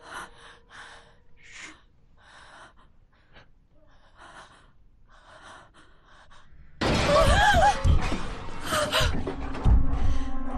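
Faint, irregular short breaths or gasps in a tense silence. About seven seconds in, a sudden loud burst of noise with shrill wavering screeches and low thumps, a horror-film jump-scare sound.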